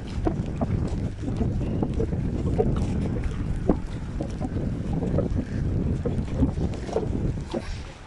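Wind buffeting the microphone: a dense, low rumble that runs on unbroken, with a few short knocks scattered through it.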